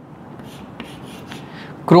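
Chalk writing on a chalkboard: a few quiet, short scratchy strokes as a letter is drawn.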